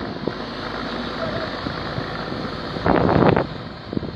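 Heavily loaded truck's engine labouring in soft sand while it is towed, under wind buffeting the microphone, with a loud burst of sound about three seconds in.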